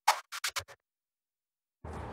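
Short electronic logo sting made of quick scratch-like stabs that stop under a second in, followed by silence. Near the end, steady outdoor street background noise begins.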